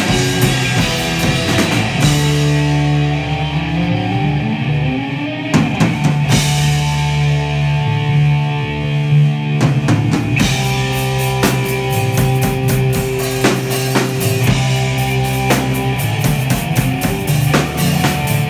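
A rock band playing live: electric guitars, electric bass and a drum kit in an instrumental passage without singing. The cymbals thin out for a few seconds early on, and the drums then come back in hard.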